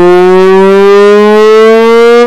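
One long, very loud fart: a single buzzing note held without a break, its pitch slowly rising.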